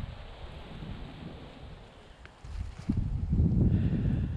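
Wind buffeting the camera microphone: a low, rough rumble that grows much stronger about three seconds in.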